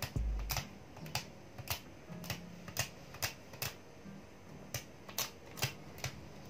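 Irregular sharp plastic clicks and taps, about two a second, from hands handling a phone in a clear plastic case and its film wrapping. Soft background music with held low notes plays underneath.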